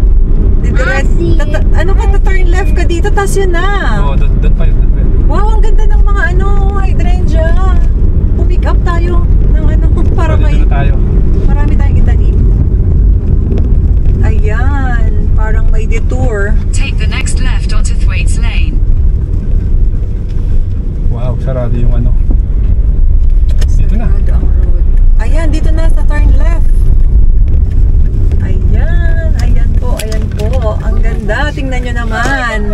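Steady low road and engine rumble inside a moving car's cabin, with people's voices talking over it on and off.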